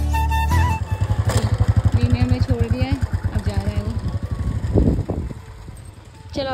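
A Royal Enfield Bullet motorcycle's single-cylinder engine running under way, with fast, even thumps, and a voice over it. The background music that was playing breaks off in the first second.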